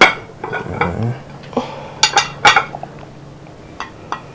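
Metal clinks and knocks from a stainless-steel container being handled: one sharp clink at the start and a quick cluster of clinks about two seconds in.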